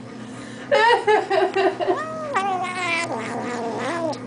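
An 8-week-old kitten squealing while eating treats. A quick run of short squeals starts under a second in, followed by several longer, drawn-out squeals, some sliding down in pitch.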